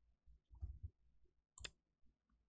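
Near silence with one sharp click about one and a half seconds in, typical of a computer mouse click placing a move on a digital Go board.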